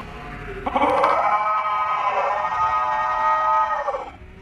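A girl's long, sustained yell, starting just under a second in and held at a steady pitch for about three seconds before dropping away at the end.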